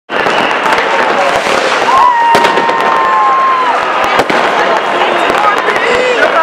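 New Year's Eve fireworks and firecrackers going off all around: a continuous dense crackle with many sharp bangs and pops throughout. About two seconds in there is a long, steady whistle lasting almost two seconds.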